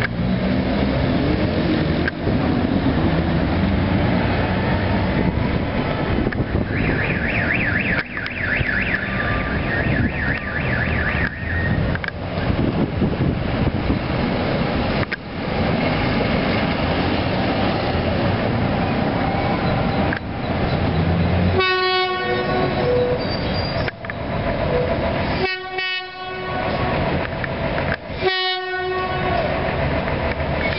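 Horn of an approaching Incofer Apolo diesel railcar train, sounding three blasts in the last third (the first about two seconds long, the next two shorter), over a steady rumble of engines and street traffic.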